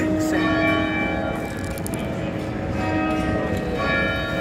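Church bells ringing, with a new strike a little more than once a second and each note ringing on under the next.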